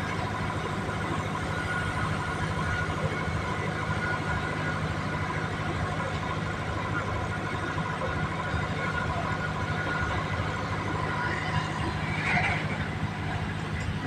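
Steady mechanical hum with a constant low drone from a freight train standing at the track, its locomotive engine running.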